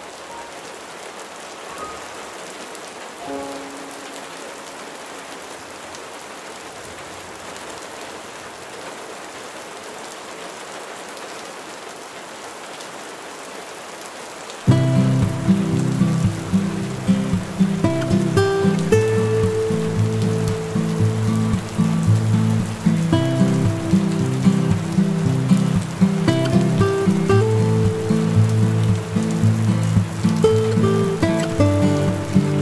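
Steady rain pattering on a window glass, with a few faint soft notes. About halfway through, slow instrumental music comes in suddenly and louder, with sustained low chords and scattered higher notes over the rain.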